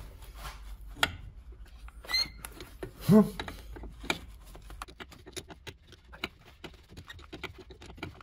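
Steel spanner clicking and ticking against a brake-line fitting as it is worked loose: a run of small, irregular metallic clicks, with a brief squeak about two seconds in.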